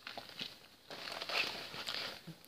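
Soft rustling of things being handled, with a few light taps, then a longer rustle from about a second in.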